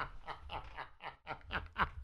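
Quiet, breathy laughter: a run of short snickers, about five a second, dropping away briefly about a second in and then picking up again.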